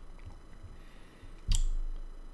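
Quiet room tone, then one sharp tap with a low thump about one and a half seconds in.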